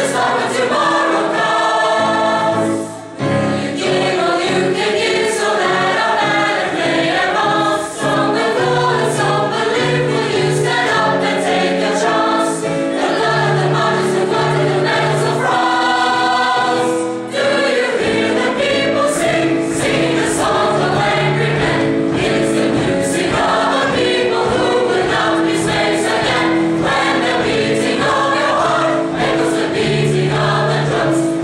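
Large school choir singing in many parts, with short breaks between phrases about three seconds in and again near the middle.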